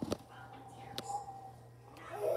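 Spatula stirring thick cake batter in a stainless steel bowl, with two light clicks of the spatula against the bowl, one at the start and one about a second in.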